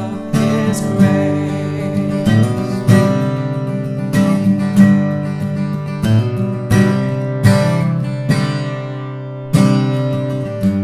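Acoustic guitar strummed in chords, with a sung note trailing off about a second in. Near the end a chord is left to ring and die away, then strumming picks up again.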